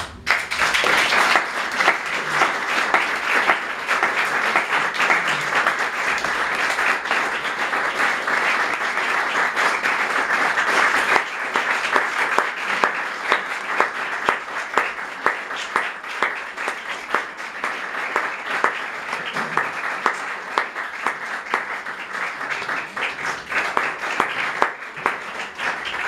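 Audience applauding, breaking out suddenly and thinning into more separate claps near the end.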